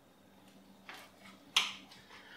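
Small sounds of eating at a plate over a faint low hum: a faint tick about a second in, then a sharper short click about a second and a half in.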